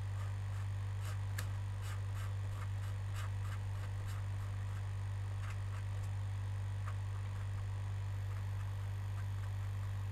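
Steady low electrical hum with faint scattered ticks, a metal tool scraping across a circuit board's traces.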